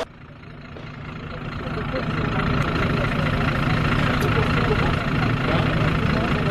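A vehicle engine idling with a steady low hum, fading in over the first two seconds. Faint voices can be heard behind it.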